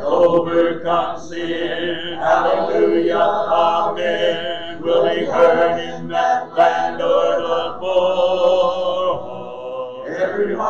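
Speech: a man reading aloud from the Bible.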